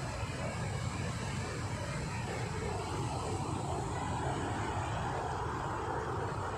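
Steady rush of flowing water, the stream that feeds and drains the concrete raceways of a fish farm.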